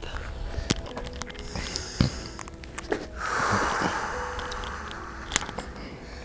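Quiet outdoor ambience with scattered light clicks and taps, and a soft breathy rush of noise lasting about a second, a little past the middle.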